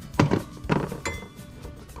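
A few sharp clinks and knocks in the first second, with a lighter one just after, as squeegee handles are handled while being swapped on a wooden cone adapter.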